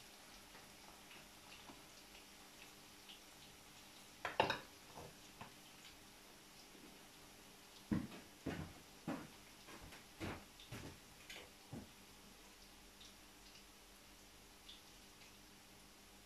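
Quiet kitchen clatter: utensils and dishes knocked and set down on a counter, with one sharp clack about four seconds in and a run of six or seven short knocks between about eight and twelve seconds.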